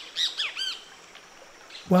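A bird calling in a quick run of short, arched notes during the first second, then only faint background hiss until a voice begins near the end.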